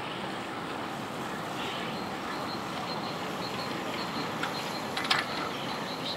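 Steady rolling noise of a bicycle being ridden along a park path, with wind on the microphone. About five seconds in comes a short rattle as the bicycle goes over a bump.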